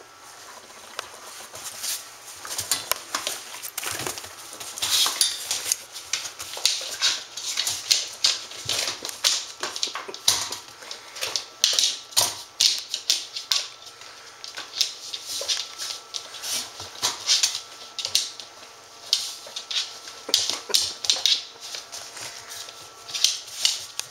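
A black standard poodle and a red standard poodle puppy playing on a tiled floor. Irregular quick clicks and scuffles, many in a row, from claws on tile and toys being knocked about.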